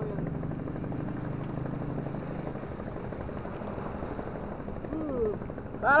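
A low, steady engine drone that fades out about halfway through, with a man's brief exclamation near the end.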